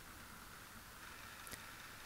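Near silence: faint room hiss with one soft tick about one and a half seconds in.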